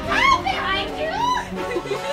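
High-pitched voices squealing and laughing in a run of short, arching cries, over quiet background music.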